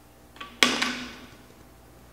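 A finger flicks a playing card out from under a coin with a light click, and a moment later the coin drops into a plastic soda bottle, striking loudly twice in quick succession with a brief ringing after.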